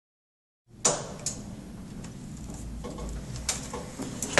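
A few sharp clicks and knocks, the loudest just under a second in and another near the end, over low steady room noise.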